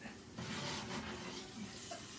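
A steak in a hot cast iron skillet sizzling faintly, a steady hiss that grows slightly louder about half a second in.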